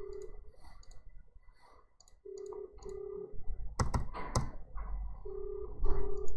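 Telephone ringback tone in the Australian double-ring cadence: two short low tones, a pause of about two seconds, then the pair again, heard while the line rings. Between the rings come computer keyboard clicks and taps, two of them sharper about four seconds in.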